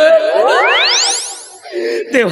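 A comic sound effect: a fast, whistle-like sweep rising steeply from a low to a very high pitch in under a second, with several overlapping copies, then holding at the top for about half a second before cutting off.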